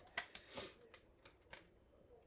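Tarot cards handled on a tabletop: a few soft clicks and a swish as a card is picked up, all in the first second and a half.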